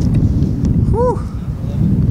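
Wind buffeting the microphone, a loud, steady low rumble, on an exposed windy overlook. About a second in, a short voice sound rises and falls in pitch.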